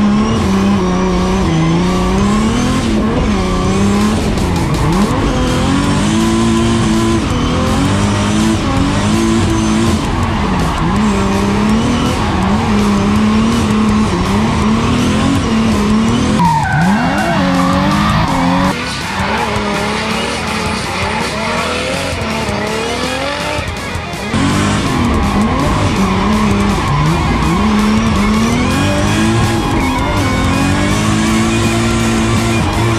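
Drift car's engine revving up and down again and again, with tyre squeal, heard from inside the roll-caged cabin during a drift run. It eases off for a few seconds a little past the middle, then revs hard again.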